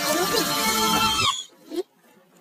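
Advert soundtrack of music and voices that cuts off abruptly a little over a second in, followed by one short, rising grunt-like vocal sound.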